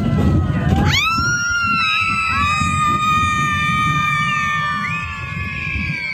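Riders on a children's roller coaster screaming: a long, high scream rises about a second in and is held for several seconds, with other screams overlapping it.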